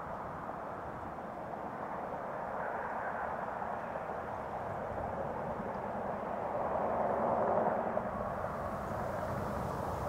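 Steady hum of distant road traffic that swells to its loudest about seven seconds in, then eases.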